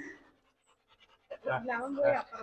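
A Rottweiler panting behind the bars, starting about a second and a half in after a near-silent stretch.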